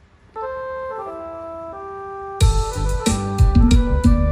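Recorded music played back through a Behringer MS16 powered monitor speaker: a soft keyboard intro of held, stepping notes starts about half a second in, then drums and bass come in with a full band a little past halfway.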